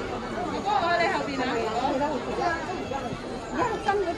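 Chatter of several people talking in a busy street market, overlapping voices with no clear words.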